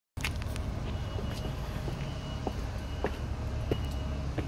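Footsteps on paving and stone steps, about two a second, over a steady low background rumble.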